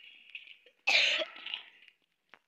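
A person coughs once, loud and close to the microphone, about a second in.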